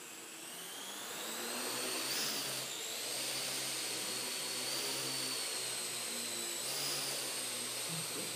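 Parrot AR.Drone quadcopter's four rotors spinning up for takeoff: a whine that rises in pitch over the first two seconds, then holds steady as it hovers, shifting pitch briefly about two and a half seconds in and again near seven seconds as it is steered.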